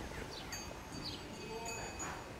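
Faint outdoor background with a few short, high, falling chirps and thin ringing tones over a low hiss.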